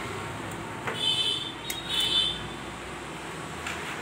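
Two short, high-pitched buzzer-like beeps, the first about a second in and the second right after, over a steady background hum.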